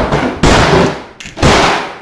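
A framed picture knocked off the wall crashing to the floor: three loud crashes in quick succession, the last fading near the end.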